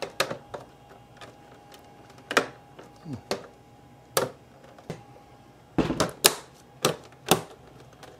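Snap-fit back cover of a Dell Inspiron 3477 all-in-one computer clicking into place as it is pressed down along the edge: a series of sharp clicks at irregular spacing, with several close together about six seconds in.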